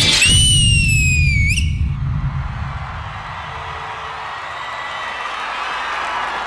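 A loud, shrill whistle holds high and slides slowly down in pitch for about a second and a half as the dance music ends, then flicks up and stops. Studio audience applause and cheering follow.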